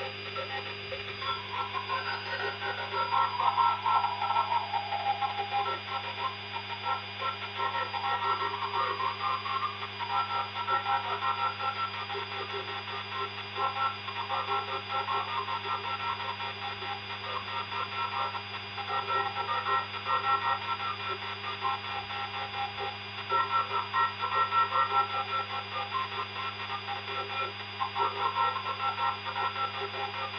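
Synthetic machining sound from a CNC milling simulator: a steady hum under a wavering, mid-pitched whine that swells and fades as the virtual end mill cuts the part at high simulation speed.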